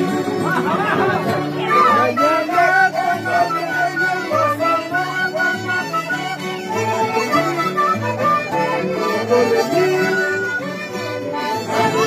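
Andean folk ensemble playing live: a side-blown cane flute and two violins carry the melody over a plucked mandolin, with a steady pulse of low notes underneath.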